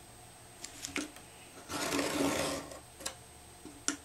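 Craft knife drawn along a ruler through paper: one scraping cut stroke of nearly a second near the middle, with a few small clicks before and after it.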